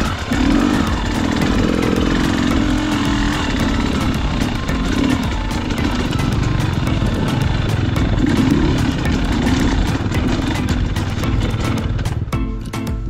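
Dirt bike engine running under way, its revs rising and falling as the bike rides a trail.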